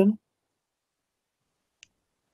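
The last syllable of a spoken word, then near silence, with one faint, short click near the end.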